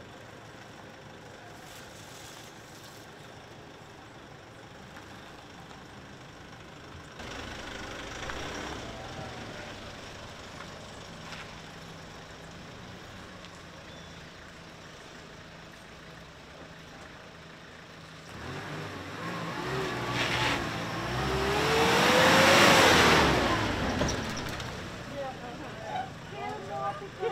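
A pickup truck's engine running as it pulls away and then drives past close by, growing loud about three-quarters of the way in with its engine note rising and then falling as it passes.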